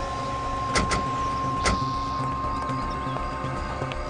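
SUV doors slamming shut: two in quick succession about a second in and a third a moment later, over background music with a held high tone.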